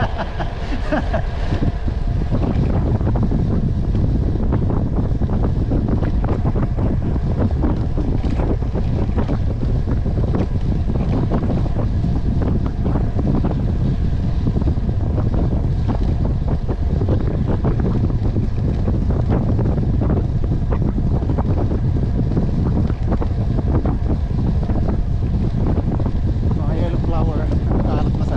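Wind buffeting the microphone of a camera on a road bicycle riding at speed: a steady low rumble.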